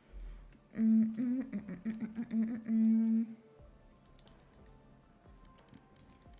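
A woman humming a short wavering tune for about two and a half seconds, ending on a held note, followed by faint soft clicks.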